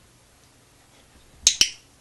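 Two sharp clicks a split second apart, about one and a half seconds in, against quiet room tone.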